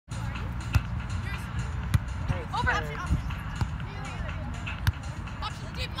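Beach volleyball being struck by players' hands: a sharp smack about a second in as the serve is hit, another about two seconds in, and a third near five seconds, over a steady low rumble.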